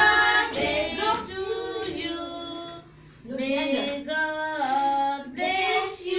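A woman and young children singing a song together, with a short break about three seconds in.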